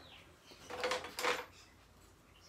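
A plastic storage drawer in a Festool Systainer stack being slid: two short scraping rattles about half a second apart.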